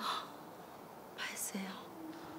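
Soft, breathy, whispered speech from a woman asking quietly whether the other is all right, then a short breathy voice sound about a second and a half in.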